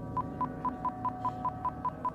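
Short electronic beeps repeating evenly about five times a second over a steady held low tone: a tense pulsing music bed, with no speech.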